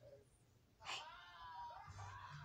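A domestic cat gives one short meow about a second in, after near silence.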